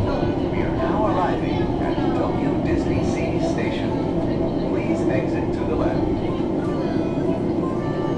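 Steady running hum of the Disney Resort Line monorail heard from inside the car, with music and indistinct voices over it.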